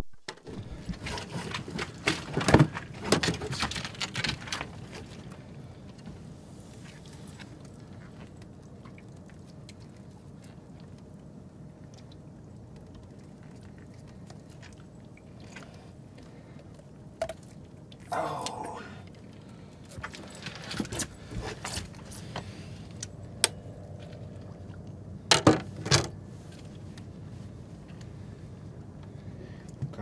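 Handling noises from a landing net and a catfish on a boat deck: scattered clicks, clinks and knocks, bunched in the first few seconds and again near the end, over a steady low background noise.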